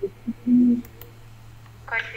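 A short, low, steady hummed "mm" from a person, about half a second in, over a steady low hum.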